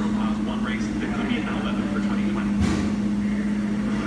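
Speed Queen front-load washer running its normal cycle, the drum turning with a steady low hum and a single knock about two and a half seconds in. A radio talks faintly in the background.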